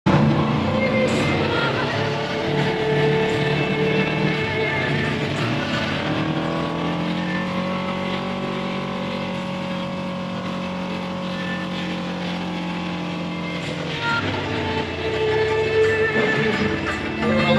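Segway Villain 1000cc UTV engine running under way, heard from inside the cab. The engine note shifts in pitch for the first few seconds, holds a steady pitch through the middle, and changes again near the end.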